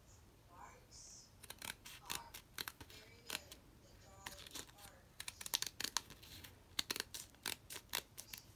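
A self-adhesive rhinestone sticker sheet being handled: irregular sharp clicks and crackles as a strip of gems is worked free of the sheet. The clicks begin about a second and a half in and come thicker toward the end.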